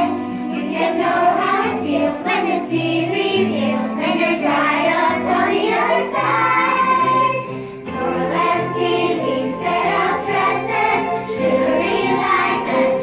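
A song playing, with a choir of voices singing a melody over a steady bass line.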